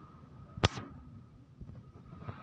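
A single sharp click about two-thirds of a second in, over faint background noise.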